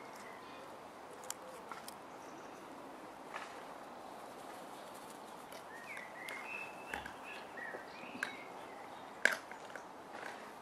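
Boerboel puppies playing on a lawn: faint scuffles and small clicks, with a cluster of short high chirps from about six to eight and a half seconds in, and one sharp click near the end.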